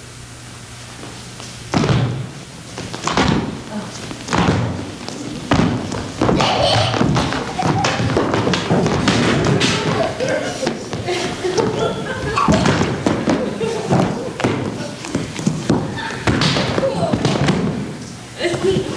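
Bodies thudding on a stage floor as two performers grapple and tumble: a quick run of repeated thumps starts about two seconds in and carries on, with voices mixed in.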